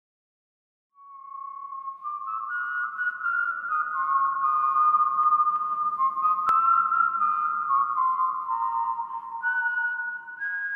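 Whistled melody of slow held notes stepping up and down in pitch, opening the song over a faint low accompaniment. It starts about a second in, with a single sharp click midway.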